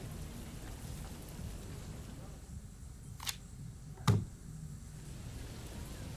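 Quiet outdoor ambience from the episode's soundtrack, broken by two short sharp clicks about a second apart, the second louder and fuller.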